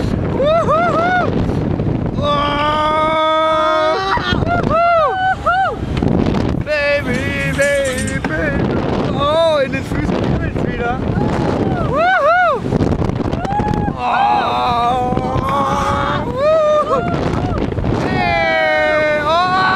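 Riders on a swinging thrill ride yelling again and again in short calls that rise and fall in pitch, with some held notes. Wind rushes over the camera microphone throughout.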